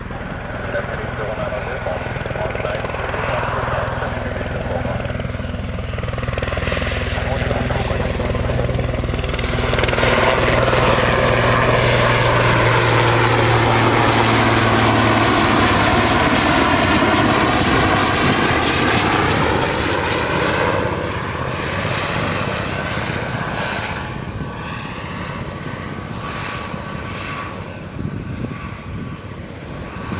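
Twin-turbine Super Puma helicopter flying past: rotor and turbine noise with a low steady rotor throb builds, is loudest for about ten seconds as it passes close by with a sweeping, phasing sound, then fades as it descends away.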